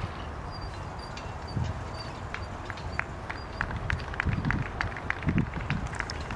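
A pair of horses trotting on sand, drawing a four-wheeled driving carriage: soft hoofbeats with quick light clicks and rattles from the harness and carriage, getting busier from about a second and a half in.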